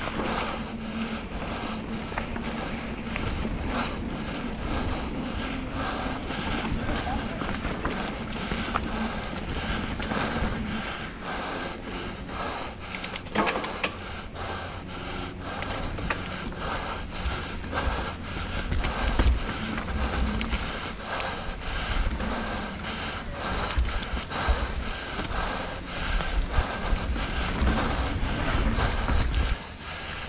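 Hardtail mountain bike rolling fast down a rough dirt trail: tyre noise with a dense, irregular rattle of chain and frame knocking over roots and bumps, over a low rumble.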